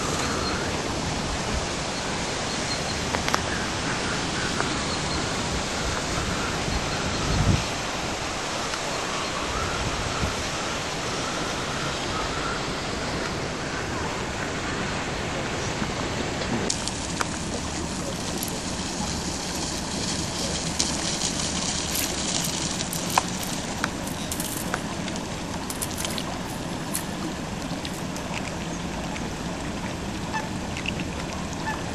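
Steady rushing outdoor noise, with a short low thump about seven seconds in and a few faint clicks in the second half.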